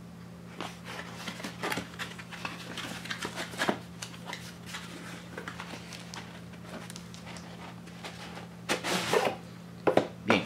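Cardboard packaging being handled: the inner molded-pulp tray sliding out of its cardboard box, with scattered light scrapes and taps and a louder rustle near the end.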